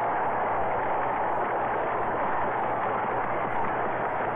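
Crowd applauding, heard as a dense, steady noise on a muffled old newsreel soundtrack.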